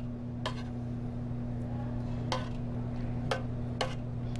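Metal kitchen tongs clicking against a stainless steel pan, about four sharp clicks spread over the few seconds, over a steady low hum.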